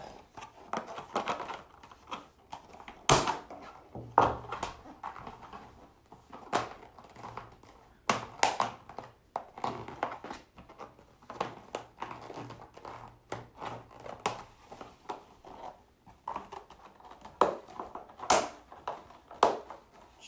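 Hard plastic handling: a green plastic strip being slid and pressed along the groove of a white plastic feeding trough, with scattered clicks and scraping. Several sharp plastic knocks stand out, the loudest about 3, 4, 8 and 18 seconds in.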